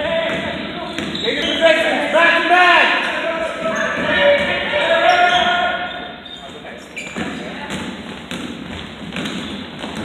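Basketball being played on a gym's hardwood court, with short arching squeaks of basketball shoes and players' shouts through the first half. In the second half come repeated thuds of a bouncing ball and running feet, in a large hall.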